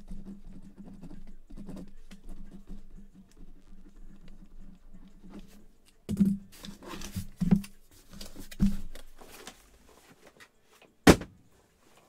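Handling sounds on a desk as a box is worked over and cleared away: light rustling at first, then a few dull knocks, and one sharp knock near the end.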